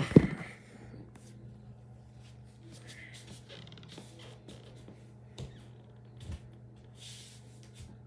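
A phone knocks against a wooden floor as it is handled and set down, loud and sharp right at the start. Then comes a low steady hum, with two soft thuds of bare feet on the floor in the second half.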